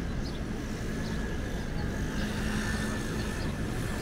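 City street traffic at an intersection: a steady rumble of vehicles, with one vehicle's engine hum swelling and fading about halfway through.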